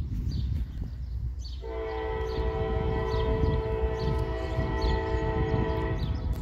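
Norfolk Southern locomotive air horn sounding one long blast of several notes together, starting about one and a half seconds in, as the train approaches. Birds chirp repeatedly over a low rumble.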